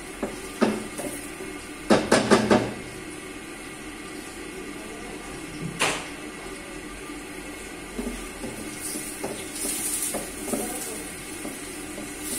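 Wooden spatula knocking against a steel cooking pot: a quick run of four sharp knocks about two seconds in, a single knock near six seconds and a few lighter clatters later, over a steady hum.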